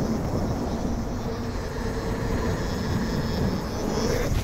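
Santa Cruz mountain bike rolling fast down a concrete path: a steady hum of knobby tyres on the pavement under heavy wind rushing over the helmet camera's microphone.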